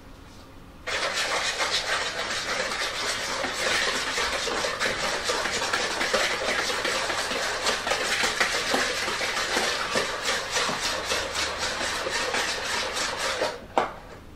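Wire whisk beating egg yolks and sugar in a glass mixing bowl: a fast, steady run of scraping strokes that starts about a second in and stops just before the end.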